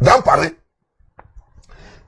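A man's voice says one short word, then near silence with a single faint click.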